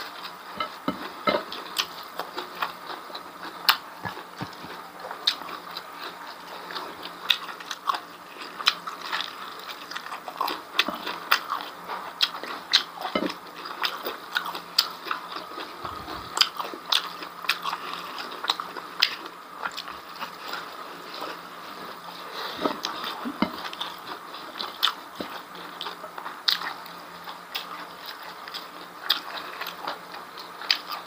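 Close-up mouth sounds of a person chewing beef tripe and rice: many irregular wet smacks and clicks, with a few sharper crunches.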